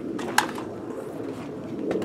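One sharp knock about half a second in and a lighter one near the end, over steady low background noise: an OSB panel and a pneumatic nail gun being handled against the box.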